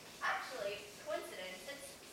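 A person's voice on stage making several short, wavering vocal sounds without clear words.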